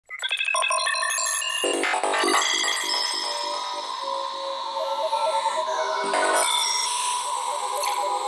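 Opening of an electronic music track: bright, bell-like synthesizer notes in a quick stepping pattern. A faster pulsing synth line with a fuller middle range comes in about one and a half seconds in, and sliding synth tones run through the later seconds, with no deep bass.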